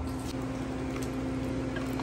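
Induction cooktop running at 1300 watts under a pot of broth: a steady hum with a constant low tone.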